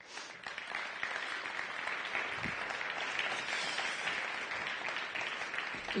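Audience applauding steadily, an even patter of many hands that swells over the first second and holds.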